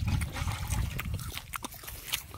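Close-up chewing and mouth smacking of someone eating grasshoppers: a run of small, irregular crackling clicks. A low rumble on the microphone fills the first second.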